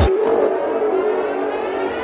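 Breakdown in a dirty progressive goa trance DJ set: the kick drum cuts out suddenly at the start, leaving a held, siren-like synth tone with faint sweeping glides above it.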